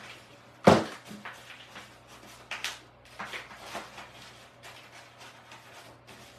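A sharp knock on the work table less than a second in, then brown craft paper rustling in short bursts as it is handled and rolled into a scroll.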